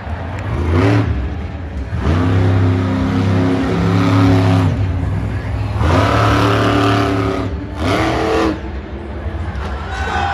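Monster truck's supercharged V8 revving hard in four bursts: a short one, a long one of nearly three seconds, another of a second and a half and a last short one near the end, the pitch dropping away between them.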